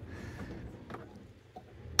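Quiet outdoor background: a faint low rumble with a faint click about a second in.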